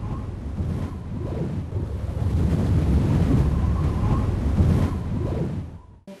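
Wind buffeting the camera microphone on a high, open snow slope: a heavy, uneven low rumble that swells and eases, fading out just before the end.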